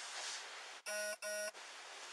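Two short electronic beeps in quick succession about a second in, each a buzzy steady tone that starts and stops abruptly.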